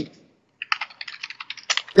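Typing on a computer keyboard: a quick run of keystrokes, several a second, starting a little under a second in.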